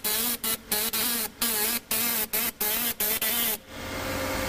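CNC character-marking machine working its stylus head across a strip: hissing bursts broken by brief gaps several times a second, with a motor whine that rises and falls with each move. Near the end it settles into a steadier hiss.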